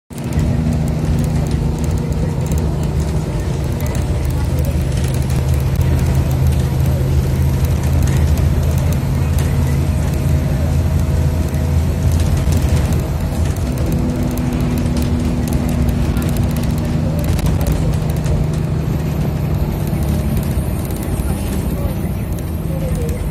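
Engine drone and road noise of a moving road vehicle heard from inside it: a steady low hum whose tones shift slightly a little past halfway.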